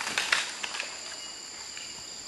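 Jungle insects droning steadily at a high pitch, with a scattering of short clicks and rattles in the first second from rifles and gear being handled by troops in formation at the command to present arms.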